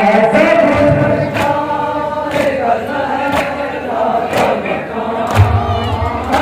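A group of men chanting a nauha (Shia mourning lament) together, with sharp matam chest-beating strikes about once a second keeping the beat.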